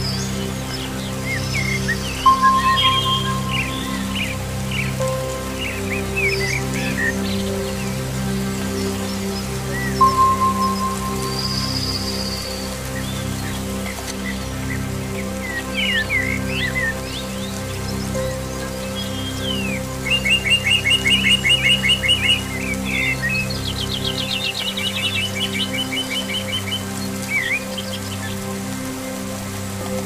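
Many birds singing over a soft music bed of held low chords, with a faint hiss of rain. Scattered chirps and whistles sound throughout, with a clear whistled note a couple of seconds in and again about ten seconds in, and a fast even trill about two-thirds of the way through.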